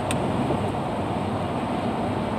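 Steady road and engine noise inside the cab of a moving pickup truck.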